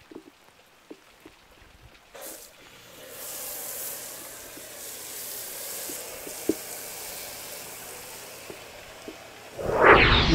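Pressure-washer foam cannon spraying foam over a tractor's bodywork: a steady hiss that starts about three seconds in, after a few faint clicks.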